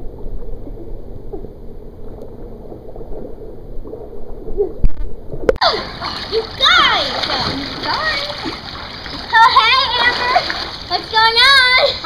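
Children splashing water in a swimming pool: a quieter first half, then about halfway through the water is suddenly churned into loud splashing, with high-pitched squeals and shouts of girls over it.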